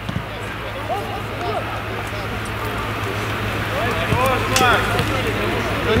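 Unclear shouts and calls from players across an outdoor football pitch over steady background noise and a low hum, the voices louder about four to five seconds in, with a sharp knock or two around then.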